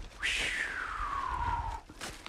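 One long high whistle-like tone gliding steadily down in pitch for about a second and a half, over a low rumble of wind and handling noise as the phone is swung round in a full spin.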